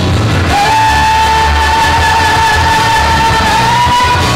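Live pop song: a female singer holds one long high note, starting about half a second in and drifting slightly upward, over amplified backing music with a steady bass beat.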